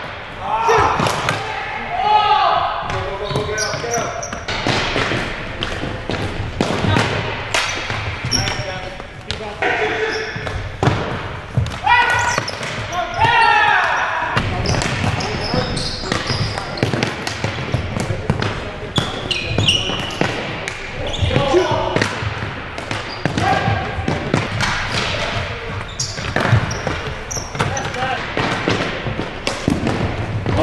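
Ball hockey in a gymnasium: hockey sticks and the ball knocking sharply against each other and the hardwood floor, over and over at an uneven rhythm. Players' shouts and calls come in between.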